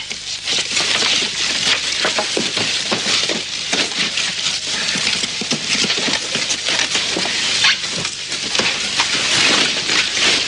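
Steady crackling and rustling of collapsed wooden rubble, dense with small cracks, knocks and scrapes as someone pushes and crawls through the broken beams.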